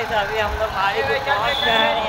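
Mostly speech: a man talking, over a low rumble of street traffic.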